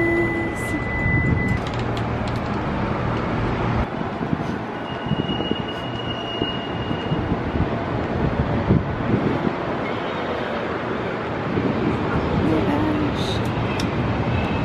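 City street noise: a steady rumble of traffic with faint voices of passers-by, and a thin high tone for about two seconds midway.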